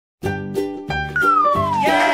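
Bright children's background music with a regular beat, starting a moment in. About halfway through, a single high tone slides steadily downward in pitch over most of a second.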